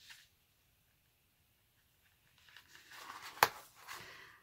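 Hands handling a craft-foam sheet and elastic cord on paper: soft rustling that starts about two and a half seconds in, with one sharp tap about three and a half seconds in as the foam is lifted and turned.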